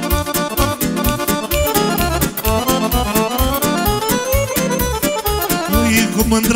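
Live band playing an instrumental break of a Romanian party song: accordions, saxophone and arranger keyboards over a steady beat, with fast melodic runs and no singing.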